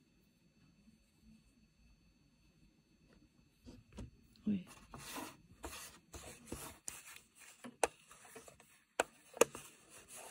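Cotton cloth rustling as it is handled and positioned on a sewing machine's needle plate, with several sharp clicks; near quiet for the first few seconds, the handling starting about halfway in.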